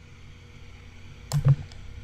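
Two quick computer mouse clicks, close together, about a second and a half in, over quiet room background.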